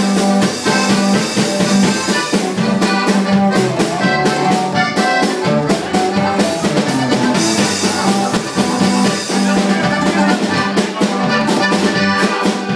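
A live norteño band playing an instrumental passage: button accordion with bajo sexto, electric bass and a drum kit keeping a steady beat, without vocals.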